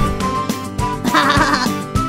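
Light children's cartoon background music with a short quavering vocal sound from a cartoon character about a second in.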